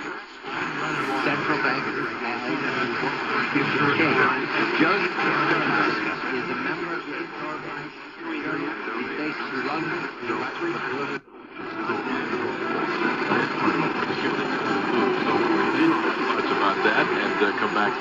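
Speech from a distant AM station on 570 kHz playing through the C.Crane CC Radio EP Pro's speaker. The sound is held to a narrow AM audio band, and it drops out briefly about eleven seconds in.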